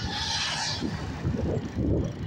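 Wind buffeting the microphone of a handheld camera while riding a bicycle, an uneven low rumble, with a brief hiss in the first half second or so.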